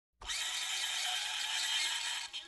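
Steady, high-pitched buzzing insect chorus in a summer field, cutting in abruptly just after the start.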